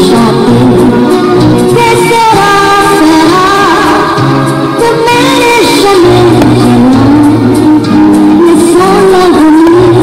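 A song: a singing voice carrying a gliding melody over steady instrumental backing.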